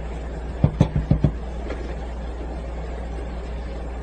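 A pot of water boiling on a portable gas burner, a steady hiss with a low rumble, with a quick cluster of about five knocks about a second in as the mesh strainer is handled at the cutting board.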